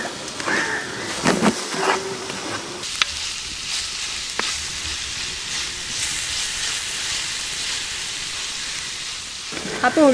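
Sliced shallots and green chillies sizzling as they fry in a large earthen pot over a wood fire, stirred with a wooden spoon. The steady sizzle takes over about three seconds in, with a few light clicks from the spoon.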